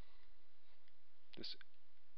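A pause in a man's lecture filled with a steady low hiss from the recording, then one short spoken word about one and a half seconds in.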